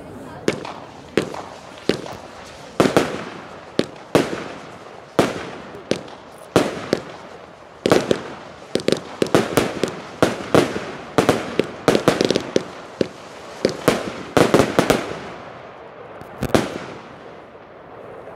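Scuba 25-shot firework cake firing its shots: a string of sharp bangs, about one a second at first, then coming fast and close together in the middle, with the last shot a little before the end.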